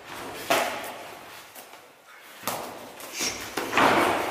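Kickboxing gloves and shin or foot guards thudding against each other as punches and kicks land during sparring, a few separate impacts at irregular spacing, the loudest near the end.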